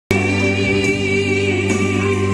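Two women singing a held note into microphones over an amplified backing track, after a very brief dropout right at the start.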